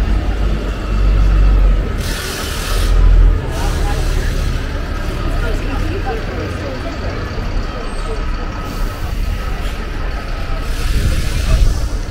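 Busy street ambience: people chatting at nearby outdoor tables over a steady low rumble, with two brief hissing bursts, one about two seconds in and one near the end.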